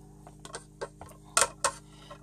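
Hard melamine mixing bowls clicking and clacking against each other as they are handled and nested: about five short, sharp knocks, the two loudest close together about a second and a half in.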